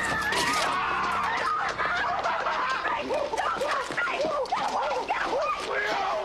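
A group of men's voices hooting, whooping and yelling without words, many short rising-and-falling cries overlapping one another.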